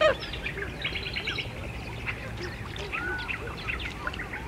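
Many birds calling over one another, with one loud descending call right at the start and a quick trill about a second in.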